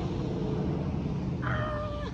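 A chicken gives one short, steady-pitched call about a second and a half in, over a low steady background rumble.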